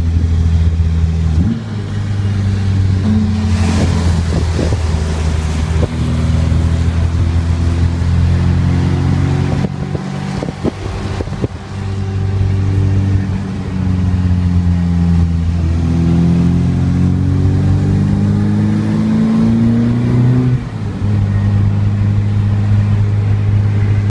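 Rover K-series-engined MG Midget running under way, heard from the open cockpit: the engine note climbs in pitch as the car accelerates, with several brief dips and drops where the driver lifts off or changes gear.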